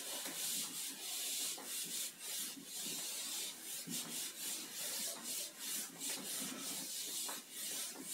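Board eraser rubbing across a whiteboard, wiping off marker in quick back-and-forth strokes, about two or three a second.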